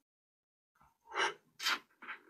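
Under a second of dead silence, then two short, sharp, breathy vocal bursts from a person, about half a second apart.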